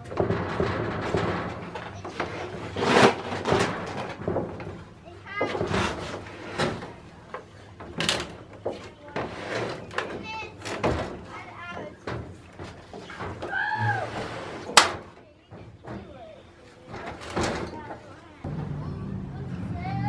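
A wooden pallet carrying a cast-iron Ford flathead V8 engine being wiggled and dragged across a steel mesh trailer ramp: irregular knocks, bangs and scrapes of wood and iron on metal, with a sharp bang about 15 seconds in.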